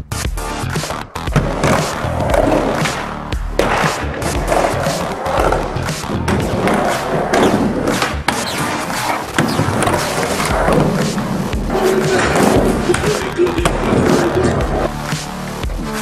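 Skateboard wheels rolling on plywood ramps and a concrete floor, with repeated sharp knocks as the board pops and lands, under music.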